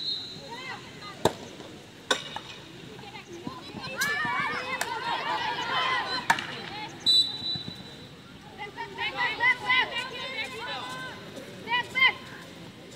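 Field hockey sticks cracking against the ball in sharp single hits on an artificial-turf pitch, with players shouting in high voices and one short umpire's whistle blast about seven seconds in.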